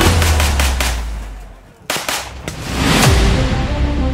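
Background rock music fades out, then a short burst of rifle gunfire comes about two seconds in, several sharp shots in quick succession. The music comes back in near the end.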